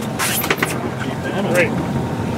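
Boat engine running steadily with a low hum, with a brief rush of noise about half a second in.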